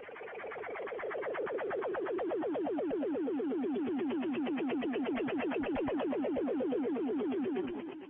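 Electronic warbling tone on the broadcast audio: rapid falling sweeps, about ten a second, that fade in over the first couple of seconds and fade out near the end.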